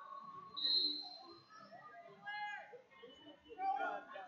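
Chatter and calls echoing around a gym, with a short, high whistle blast about a second in, the loudest sound, and a raised voice shouting shortly after the middle.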